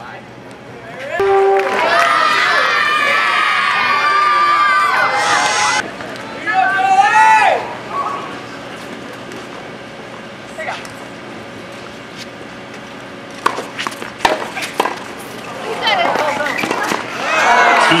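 Tennis crowd cheering and shouting for about five seconds, then one loud whoop. A few sharp claps follow in a quieter stretch, and the voices pick up again near the end.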